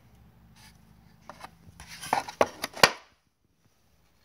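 A brass rifle cartridge (.458 Winchester Magnum) and shotgun shells being handled in a wooden box: a series of light clicks and knocks over the second half, the sharpest just before the end.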